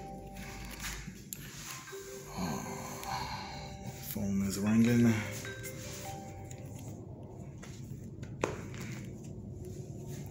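Faint background music with steady held notes. About four seconds in comes a brief hummed vocal sound, the loudest moment. A single sharp click comes near the end.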